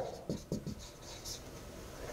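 Marker writing on a whiteboard: a few short, faint strokes in the first second, then quieter.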